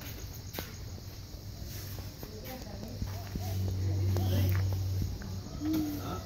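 Outdoor ambience of distant voices and footsteps, with a low steady rumble swelling in the middle for about two seconds.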